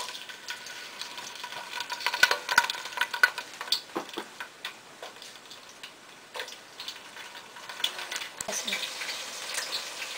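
Chopped red onion sizzling in hot oil in a stainless steel pot, with many small crackles and pops, thickest a couple of seconds in as the pieces go in.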